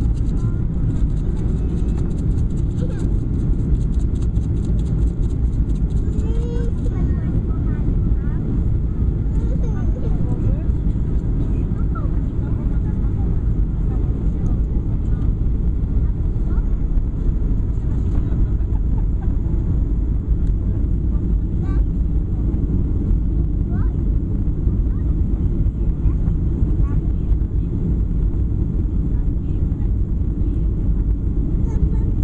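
Steady low cabin rumble of a Ryanair Boeing 737-800 descending on approach with flaps extended, the engine and airflow noise heard from a window seat over the wing.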